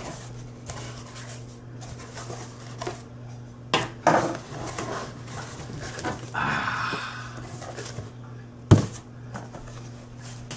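A cardboard box being unpacked: a knife slitting packing tape, the flaps and the contents rustling and scraping as they are pulled out, with a sharp knock about 4 s in and a louder one about 9 s in. A steady low hum runs underneath.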